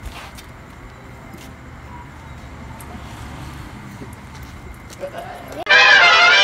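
Low, steady outdoor background noise with a few faint clicks. About five and a half seconds in, a loud musical sting cuts in abruptly: several notes held together in a bright chord, the video's transition jingle.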